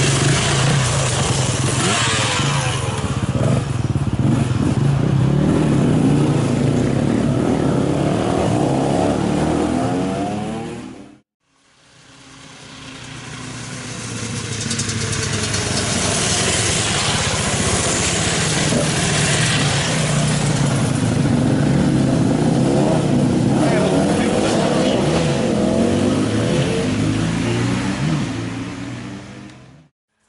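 Several enduro motorcycles riding past one after another, engines running and revving, their pitch rising and falling as each bike goes by. The sound drops out for about a second around eleven seconds in, then builds again as more bikes pass and fades away near the end.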